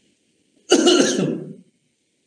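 A man's single throat-clearing cough, starting abruptly a little under a second in and lasting about a second.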